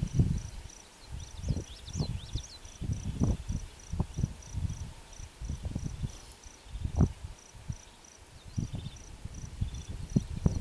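An insect chirping steadily, a high pulsed note at about five pulses a second, under irregular low rumbling thumps on the microphone.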